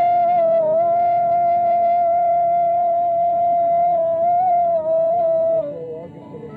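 One long sustained sung note in Pashto folk singing, sliding up into the note at the start, held with slight wavers, then dropping away and fading near the end.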